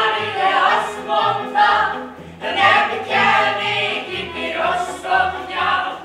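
Several voices singing a lively song together, accompanied by violins and a low bass line.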